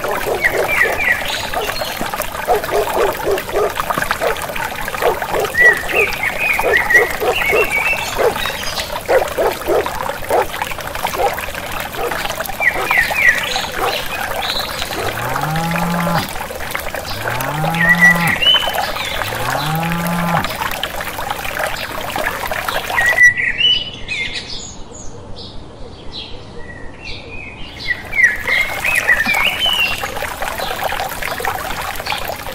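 Rural nature ambience: a steady trickle of running water with birds chirping and frogs croaking in quick repeated pulses. Midway through come three rising, drawn-out animal calls about two seconds apart. Near the end the sound turns muffled for about five seconds.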